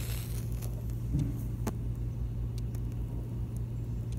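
A wooden match struck and lit to melt a crayon, heard as a few faint sharp clicks over a steady low rumble in the background.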